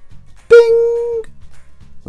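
Quiet background music with a steady beat, broken about half a second in by one loud held tone of steady pitch that lasts a little under a second and then stops.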